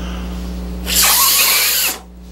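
A man blowing hard into a glass bottle that has a peeled egg trapped inside. The loud rush of breath starts about a second in, lasts about a second and stops abruptly. The air is forced past the egg to build pressure behind it and push it out of the neck.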